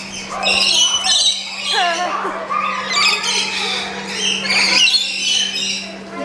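Rainbow lorikeets squawking and chattering, many shrill calls overlapping, with people's voices underneath.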